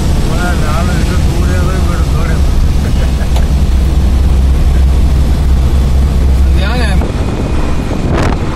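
Steady low rumble of a vehicle driving along a highway, heard from inside, with wind on the microphone. A brief wavering pitched sound cuts in about seven seconds in.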